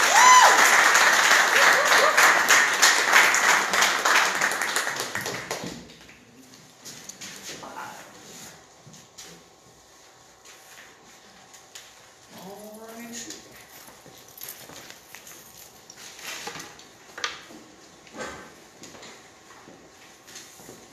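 Audience applauding and cheering, with a shout near the start; the clapping dies away after about five seconds. What follows is quiet room sound with scattered small knocks and a brief voice.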